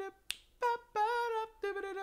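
A man singing a mock doo-wop tune in held syllables, moving through a few steady notes, with one finger snap about a third of a second in.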